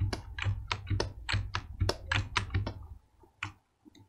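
Quick run of clicks from computer keys being pressed, about four or five a second, stopping about three seconds in.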